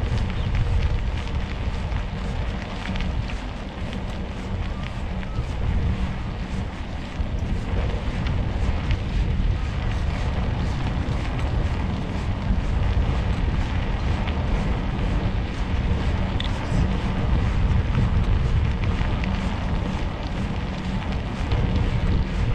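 Wind buffeting the microphone of a camera riding on a moving bicycle: a steady low rumble with light crackling.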